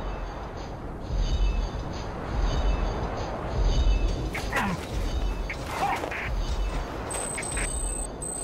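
Homemade sound effects for AT-AT walkers: a low, heavy thump about every second and a quarter, like giant footsteps. From about halfway, squealing mechanical groans fall in pitch, and a steady high electronic tone starts near the end.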